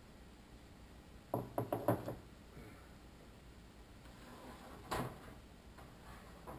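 A wooden cane knocking against things overhead: a quick run of four or five knocks about a second and a half in, then one more knock near the end.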